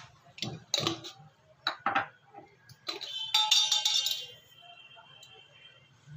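A steel spoon knocking and clinking against metal spice containers: several separate knocks, then a quick run of clinks about three seconds in, leaving a high metallic ringing that fades over the next second or so.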